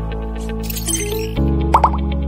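Background music with sustained chords and a light ticking beat, the chord changing about two-thirds of the way in. Near the end a short sound effect of three quick rising blips sounds over it.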